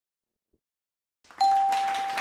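Game-show answer-reveal sound effect: silence for over a second, then a ding comes in sharply, holding one steady tone for about a second over a rush of noise that slowly fades.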